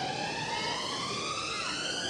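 Electronic dance music build-up: a siren-like synth tone gliding steadily upward in pitch, with its overtones climbing alongside it.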